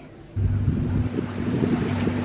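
Beach ambience: wind buffeting the microphone over the sound of the sea, with a steady low hum beneath. It cuts in abruptly about a third of a second in.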